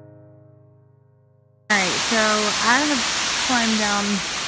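A lingering piano note from background music fades away, then a little before halfway through the sound cuts suddenly to the loud, steady rush of a waterfall's white water, with a voice talking over it.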